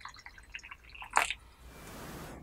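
Hot water from a gooseneck kettle trickling and dripping into a brim-full Yixing clay teapot as the stream thins and stops. A sharp click comes a little over a second in, then a soft hiss near the end.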